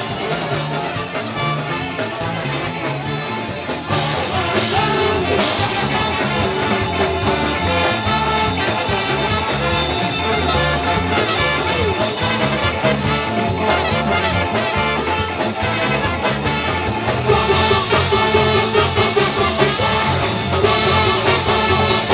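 Live ska band playing loud and fast, with a steady beat and electric guitar. The music gets louder about four seconds in and again near the end.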